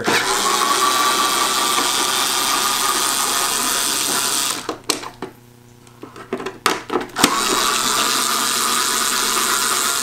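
Cordless power screwdriver running in two spells of about four seconds each, unscrewing the rear access-cover screws. In the pause between, a few sharp clicks come from the bit and screws being handled.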